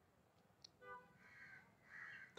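Near silence, with one faint, short bird call about a second in.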